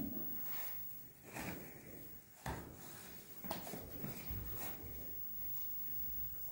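A few faint, short knocks and handling noises, about one a second, in a small tiled room.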